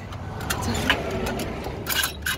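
Vehicle engine and road noise, with a few short clicks and knocks as a hand works the ratchet strap on a car tow dolly.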